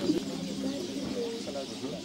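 Indistinct background voices of people close by, mixed with a bird calling.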